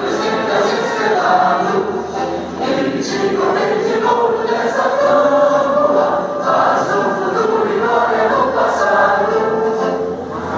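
Many voices singing an anthem together, like a choir, with a steady sung melody that carries on without a break.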